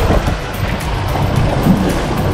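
Suzuki outboard motor running at a slow, steady speed, with water rushing past the hull and wind buffeting the microphone.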